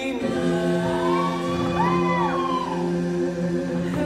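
The dance's recorded song in a break between sung lines: long held wordless vocal notes, choir-like, with one voice gliding up and back down about halfway through.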